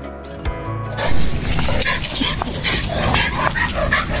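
Background music fades out in the first second. Then a young Bhotia dog on a leash gives short barks, reacting with raised hackles to another dog, over a low rumble of outdoor noise.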